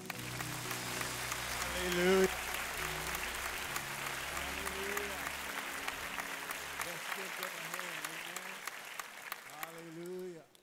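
Congregation applauding at the end of a song, with voices calling out over the clapping and soft held music notes underneath for the first few seconds.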